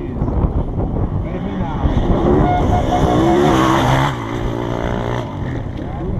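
An enduro motorcycle racing along a dirt track comes up and passes close by at speed. Its engine is loudest about three to four seconds in, then drops in pitch as it goes by and fades away.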